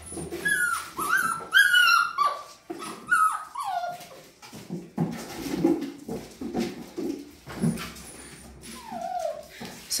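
Puppies about five and a half weeks old whining and yipping: a quick run of short, high calls that drop in pitch during the first four seconds, and one more near the end. Lower-pitched puppy noises come in between.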